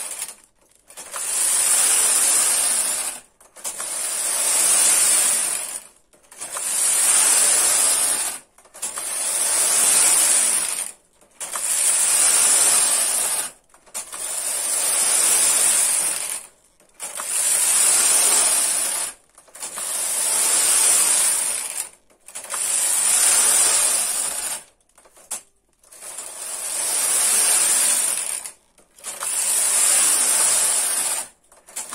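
Domestic punch-card knitting machine carriage pushed back and forth across the metal needle bed, knitting row after row. Each pass is a mechanical rasping rattle of about two seconds, with a short pause at each end of the bed, about eleven passes in all.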